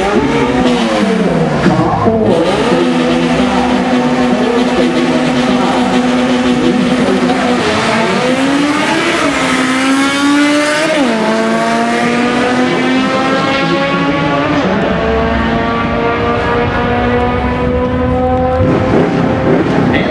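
Drag racing: a turbocharged 1992 Honda Civic hatchback and a Mitsubishi 3000GT VR-4 under full throttle down the strip. The engine notes climb through the gears and drop suddenly at shifts, about eleven seconds in and again near fifteen seconds. The run fades out near the end.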